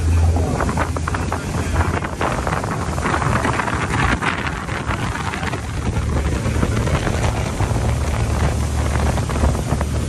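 Wind buffeting the microphone over the steady low drone of a speeding passenger boat's engines and the rush of its wake.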